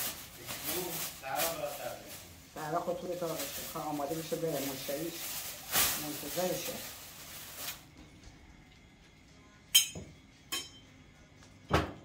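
Thin plastic tablecloth crinkling and rustling as it is unfolded and shaken out, under people talking, with a few sharp clicks near the end.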